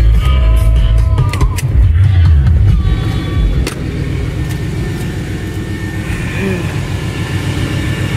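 1992 Chevrolet K1500 pickup's engine running with a loud exhaust note through a Flowmaster Super 10 muffler, louder for the first few seconds and then steadier and lower. The exhaust pipe has rusted off, which makes it freaking loud.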